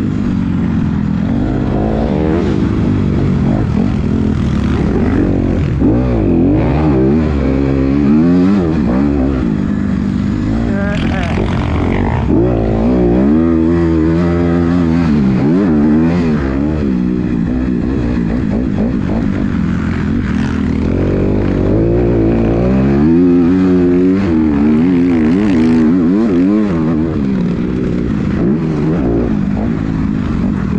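Motocross dirt bike engine revving hard and backing off again and again as it is ridden around the track, its pitch climbing and dropping every couple of seconds.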